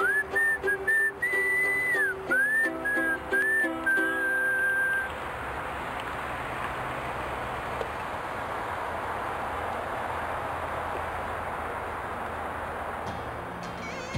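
A whistled tune with gliding notes over lower sustained accompanying tones, stopping about five seconds in. After it comes a steady hiss of noise.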